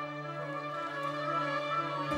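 Orchestral strings, violins to the fore, playing long sustained notes over a steady held low note.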